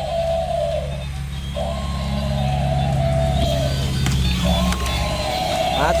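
Battery-operated walking toy mammoth running: its gear motor hums low and steady while its sound chip plays long, tinny electronic tones in three stretches with short gaps between.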